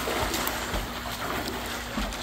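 Pool water splashing and sloshing as a swimmer kicks and strokes across the pool.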